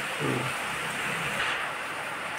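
A steady, even hiss of background noise, with a brief low murmur from a voice just after the start.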